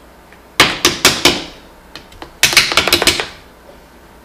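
Two quick runs of sharp clicks and knocks, about half a second in and again near three seconds: hard objects being handled and set down on a car battery on a workbench.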